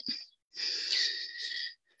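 A person's breath near the microphone: a hissy sound lasting just over a second, starting about half a second in.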